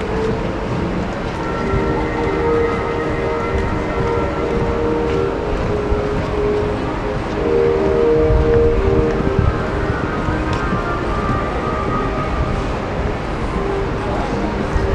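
Shopping-atrium ambience: a steady hubbub under several sustained tones that hold and shift to new pitches every second or two.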